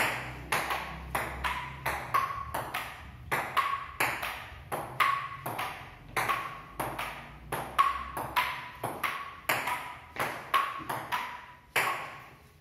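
Table tennis rally: the ball clicks back and forth off the paddles and the table, two to three hits a second, each with a short ringing ping. The rally stops just before the end.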